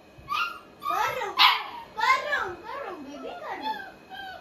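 Puppy whining and yapping, a string of short high cries that rise and fall, the loudest about a second and a half in, as it begs to be lifted onto the bed.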